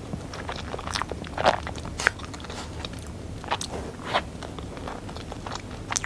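A person chewing a mouthful of soft chocolate cake close to a clip-on microphone, with a few sharp, sticky mouth clicks spaced irregularly.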